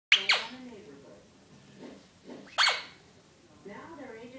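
Puppy barking sharply: two quick barks at the start and a third about two and a half seconds in, each falling quickly in pitch. Television talk runs quietly in the background.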